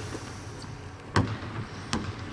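A basketball bouncing on a hardwood court: a bounce right at the start, another about a second in and one more near the end.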